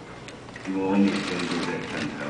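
A man speaking Mandarin into a microphone, starting about half a second in, with rapid light clicking behind the voice.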